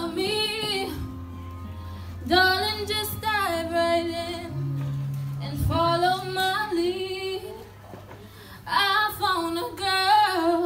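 A woman singing solo into a handheld microphone, in phrases of a second or two with short breaths between, over low held notes underneath.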